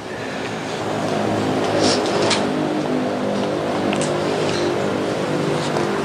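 An engine running steadily, swelling over the first second and then holding, with a few faint clicks.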